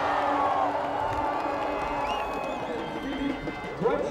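Crowd of spectators cheering and shouting, many voices overlapping, with a louder burst of shouting near the end.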